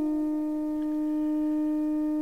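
Armenian duduk holding one long steady note.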